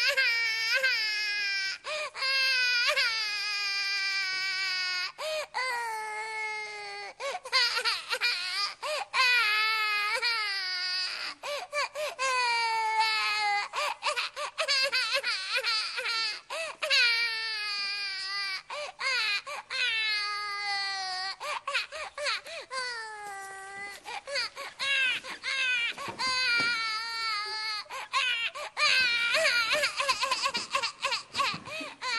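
Infant crying hard and without letup: a long run of cries, each a second or two long, rising then falling in pitch, with short catches of breath between them.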